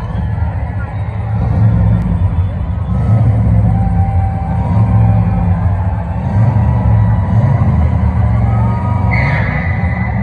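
Live country band playing in an arena, picked up on a phone close to overload so the bass and drums come through as a heavy, distorted low rumble under sustained instrument notes, with crowd voices mixed in. A short high tone sounds near the end.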